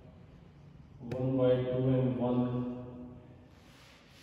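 A man's voice held in long, level-pitched syllables for about two seconds, starting about a second in after a sharp click; it is half-sung or murmured while he writes, with no clear words. Near the end comes a faint scratchy hiss of a marker writing on a whiteboard.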